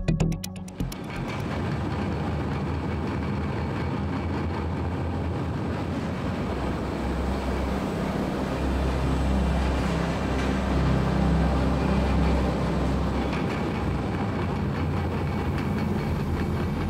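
Steady industrial machinery running in a chipboard production plant: a deep, even rumble with hiss over it. A short bit of music cuts off about a second in.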